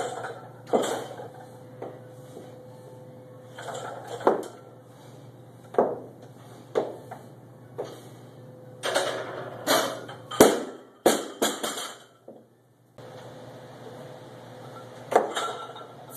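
Loaded barbell clinking and rattling as it is pressed overhead and lowered back to the shoulders, the plates knocking on the sleeves in a string of sharp clinks that crowd together about nine to twelve seconds in. A steady low hum runs underneath.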